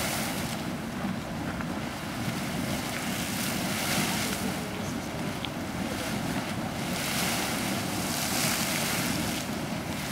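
Small geyser in continuous eruption, with steady water splashing and steam hissing. The hiss swells and fades several times, and gusts of wind buffet the microphone.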